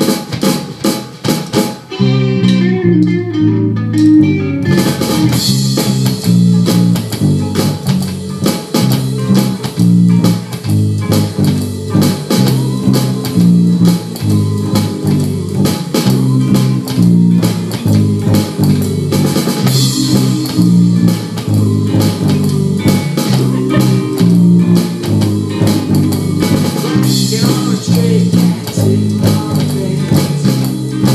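Electric bass and electronic drum kit playing a rockabilly groove together. A few drum hits open, the bass line comes in about two seconds in, and cymbals join a couple of seconds after that.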